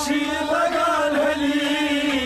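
Kashmiri Sufi devotional singing: men's voices holding a long, drawn-out sung note over a harmonium.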